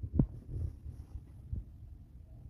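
Low rumble in a car cabin, with a short soft knock just after the start and a fainter one about halfway through.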